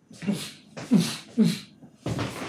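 Three short, breathy vocal sounds from a man, each dropping in pitch, about half a second apart.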